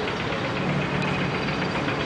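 A steady low mechanical hum, like an idling engine, over constant background hiss.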